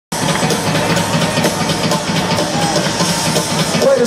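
Live rock drum kit playing a fast double-bass-drum intro to a song, recorded from the arena audience.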